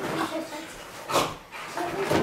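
Small dog whining excitedly, with one short, sharp bark about a second in: an over-excited greeting.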